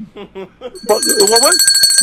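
A telephone-like ringer: steady high tones with a fast trill, starting about a second in and carrying on, heard under a man's speech.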